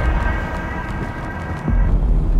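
Cinematic trailer sound effects: a deep low rumble with thin, steady high ringing tones held above it, and a second deep boom hitting near the end.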